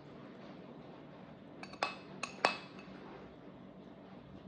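Metal spoon clinking against a ceramic bowl while scooping ice cream cake: four quick clinks about halfway through, the last the loudest, each ringing briefly.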